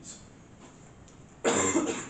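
A man coughs once, loudly and briefly, about a second and a half in.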